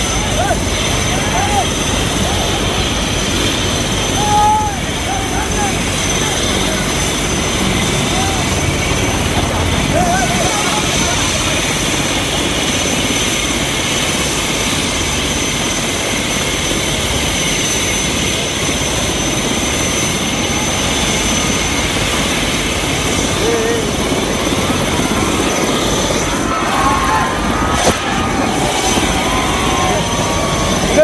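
Helicopter running on the ground with its rotor turning: a loud, steady rush of noise with a steady high whine from the turbine, and scattered voices shouting over it.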